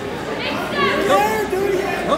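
Crowd chatter in a gym, with several voices shouting out over the background talk.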